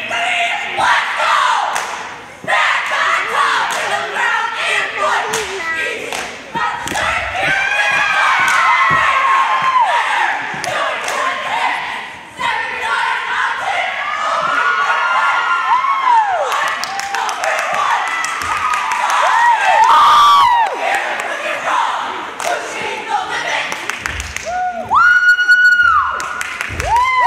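Cheerleading squad and crowd shouting and cheering, with sharp claps and the thuds of stunts on the mat throughout. A single high call is held for about a second near the end.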